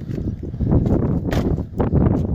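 Wind buffeting the microphone outdoors, an uneven low rumble, with a couple of short knocks about a second and a half in.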